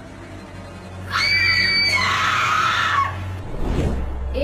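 A woman screams for about two seconds, a high held cry that falls in pitch near its end.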